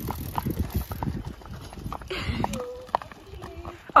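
Hooves of several horses clip-clopping at a walk on a paved path, the strikes overlapping irregularly.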